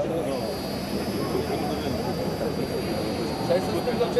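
Dräger handheld breathalyzer sounding a steady high-pitched beep while a driver blows into its mouthpiece. The tone starts just after the beginning and holds without a break, signalling that the breath sample is still being taken.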